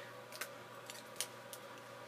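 A few faint, sharp clicks of small objects being handled, about four in two seconds, over a low steady hum.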